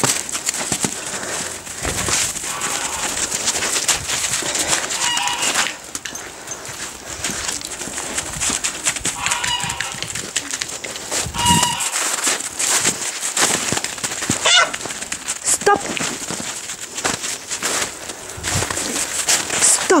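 Domestic geese honking in short calls a few times, over constant crunching footsteps in snow.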